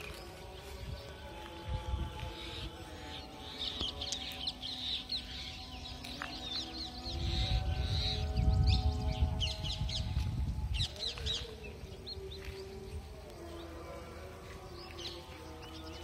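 Birds chirping and calling in quick, repeated short notes, busiest through the middle, with a low rumble of wind on the microphone for a few seconds in the middle.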